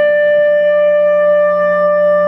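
Slow wind-instrument music holding one long, steady note over a low sustained drone.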